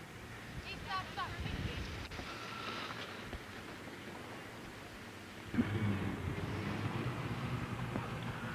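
Outdoor ski-slope ambience: faint, indistinct voices over a noisy background. About five and a half seconds in, the sound jumps louder to a steady low rumble, like wind on the microphone, at a cut in the recording.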